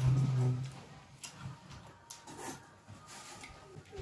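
A short closed-mouth hum, "mm", from a boy chewing a mouthful of Takis rolled tortilla chips. It is followed by a few faint, sharp crunches or clicks as he keeps chewing.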